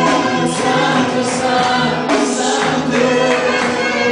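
A live gospel worship band: a group of singers, led by a male voice, sing together through microphones over keyboard, drums and electric guitar, with cymbal splashes recurring in a steady beat.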